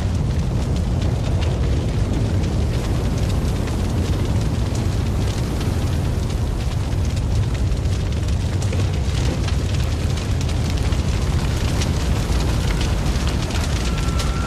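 Dramatised sound effects of a city burning: a steady, deep rumble with fine crackling throughout.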